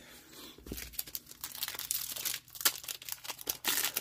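Foil wrapper of an Epic Trading Card Game booster pack crinkling and being torn open by hand: an irregular run of crackles, loudest near the end.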